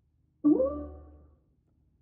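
The MINI OS9 voice assistant's activation chime, played over the car's speakers after the "Hey MINI" wake word, signalling that the assistant is listening. It is a single electronic tone that rises briefly in pitch about half a second in, then fades out over about a second.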